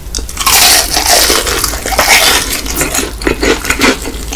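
Close-up biting into the crispy crust of a Korean fried chicken drumstick: a loud crunch begins about half a second in and crackles for nearly two seconds. It is followed by shorter crunches of chewing.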